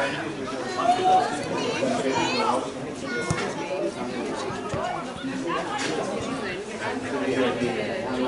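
Several people talking at once close by, overlapping chatter with no single clear voice, and one sharp click about three seconds in.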